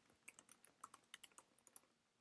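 Faint keystrokes on a computer keyboard: a quick, uneven run of light taps as a line of code is typed.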